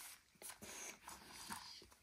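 Faint handling sounds: a few soft knocks as a plastic drone charging hub and the drone are set down on carpet.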